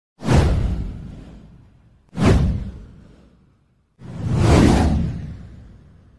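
Three whoosh sound effects for an animated title intro, each with a deep rumble underneath. The first two hit suddenly and fade over about two seconds; the third, about four seconds in, swells up more gradually and then fades.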